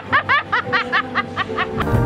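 A person giggling in a quick run of high-pitched bursts, about five a second, stopping just before the end, over background music.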